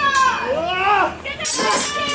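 Several high-pitched voices shouting and calling out, their pitch sliding up and down, with no clear words.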